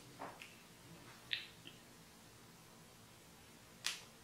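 A few faint, brief handling sounds as a makeup brush is worked over the face: a short falling squeak near the start, a small tick about a second in, and a sharper click near the end.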